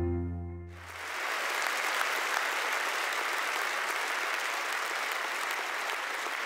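Piano music ringing out and fading in the first second, then an audience applauding steadily.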